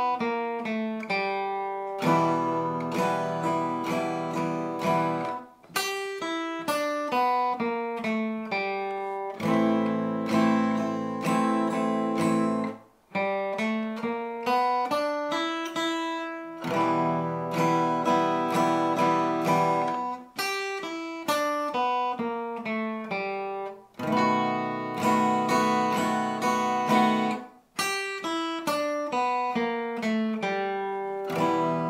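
Acoustic guitar playing a blues exercise in E minor. Passages of strummed chords (E minor, A minor, B7) alternate with single-note runs on the blues scale, four strummed stretches of about three seconds each, with the runs between them.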